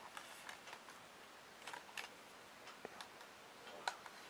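Faint, scattered light clicks and taps from handling a thin plastic yogurt cup, with a sharper tick near the end as a metal teaspoon knocks against the cup while scooping the fruit corner.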